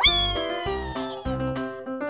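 Children's cartoon music with a steady bass beat, over which a high-pitched cartoon voice gives a squeal of about a second and a quarter as the squirrel goes down the slide, jumping up at the start and then slowly falling in pitch.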